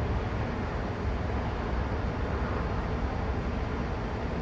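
Steady low mechanical rumble of machinery running, with no distinct knocks or changes.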